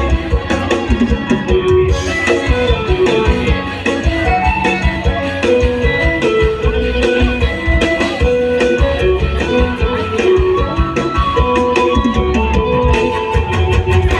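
Live, amplified mor lam band playing an instrumental passage: a plucked, guitar-like melody stepping from note to note over a steady drum-kit beat.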